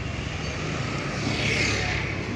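Street traffic heard from a moving vehicle: a steady engine hum with road noise, and a brief louder hiss near the end.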